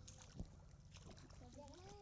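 A multi-pronged bamboo fishing spear striking shallow muddy water once, with a sharp splash about half a second in, over a steady background hiss.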